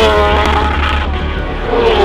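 A racing motorcycle engine at high revs passing by, its pitch falling as it goes. This happens twice, once at the start and again near the end, over background music.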